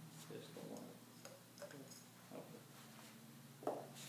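Several faint taps and clicks of a test tube being handled as potato cubes are dropped into it, the loudest just before the end, over a steady low hum.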